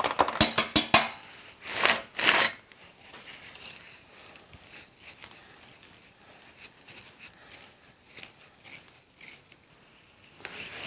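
Petrobond oil-bonded casting sand being scooped and sifted through a wire-mesh strainer onto a pattern in a casting flask: a few light clicks, two louder scrapes about two seconds in as sand is scooped up, then a faint steady patter and rustle as the strainer is shaken.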